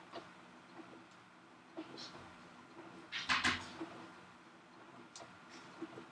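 Domestic sewing machine stitching slowly and faintly, set to its slowest speed with the foot pedal held all the way down, a pace she calls way too slow for free-motion quilting. A brief louder noise about three seconds in.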